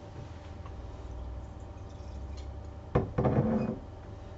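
A sharp knock about three seconds in, followed by under a second of clatter, as a wine glass is picked up from the table close to the microphone. A low steady hum of the room runs underneath.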